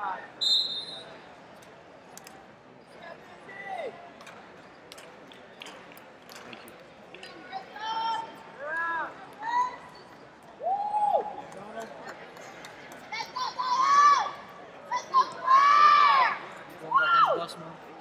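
Large sports-hall ambience with people calling out and shouting at a distance, the calls growing louder and more frequent in the second half. A short, high, steady whistle blast sounds just after the start, fitting a referee's whistle stopping the bout.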